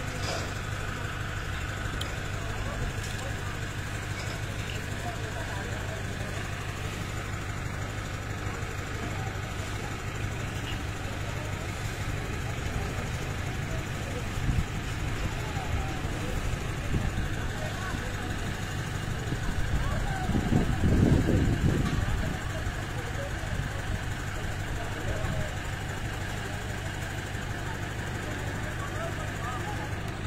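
Mobile crane's engine running steadily at idle, swelling louder for about two seconds some twenty seconds in.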